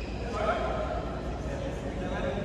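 A badminton shoe squeaking on the court floor: one short squeal about half a second in, over the general noise of the hall.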